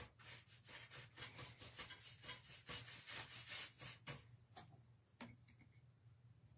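Faint scratchy strokes of a paintbrush brushing liquid wax over a paper napkin laid on wood, several strokes a second. They thin out to a few scattered strokes after about four seconds.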